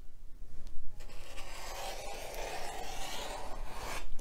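Steady rubbing and scraping from quilting tools on a cutting mat: a rotary cutter, acrylic ruler and starched cotton fabric being worked. It starts about a second in.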